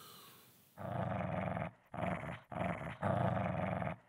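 A low, dog-like animal growl, in four stretches of under a second each, starting about a second in.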